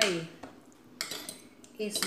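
Metal cutlery clinking and scraping against a dish: a short cluster of sharp clicks about a second in, as a fork and spoon work through a plate of food.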